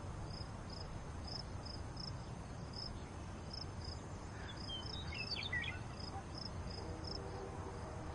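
Crickets chirping faintly, short high chirps two or three times a second, with a brief warbling bird call about five seconds in, over a faint steady hiss.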